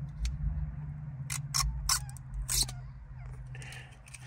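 Handling noise from a small plastic USB dongle and its cable being turned in the hands close to the microphone: several sharp clicks and light scraping, over a steady low hum.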